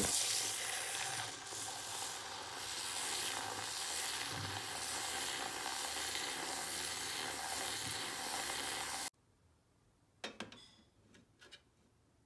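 Handheld battery milk frother whirring, its whisk spinning in milk in a ceramic mug with a steady frothing hiss. It stops abruptly about nine seconds in, followed by a couple of faint clicks.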